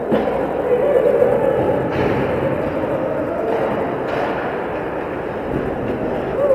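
Ice hockey rink din: the murmur and calls of spectators over the play, with sharp knocks from sticks, puck and boards a few times.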